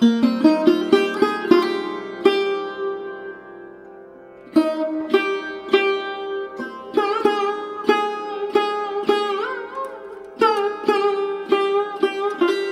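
Background music: a plucked string instrument playing a quick melody of separate struck notes, pausing briefly about four seconds in. A few notes bend in pitch near the end.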